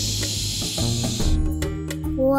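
A child's voice giving a long 'shhh' hush, lasting about a second and a half, over children's background music.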